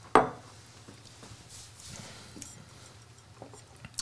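A glass tasting glass knocks once, sharply, against the wooden bar top just after the start, followed by faint small clinks and handling sounds of glassware.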